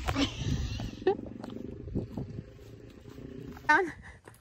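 A person in jeans sliding down a plastic playground slide: a juddering, buzzing rub of fabric against plastic, loudest at the start and fading over about three seconds. A short voice is heard near the end.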